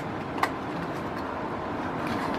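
Steady rush of blowing air in a small room, with a single light click about half a second in.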